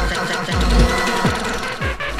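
Hard dance music from a DJ mix. Heavy kick drums, each falling sharply in pitch, hit a little under two a second under a dense layer of synths.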